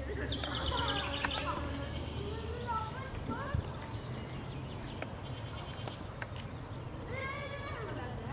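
Birds calling and singing: rapid high trills near the start and again near the end, with short sliding whistled calls in between, over a low steady rumble.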